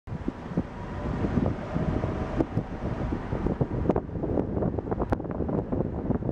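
Wind buffeting the microphone of a moving car, over low road noise, with irregular gusty pops. A faint steady tone sits underneath for the first few seconds.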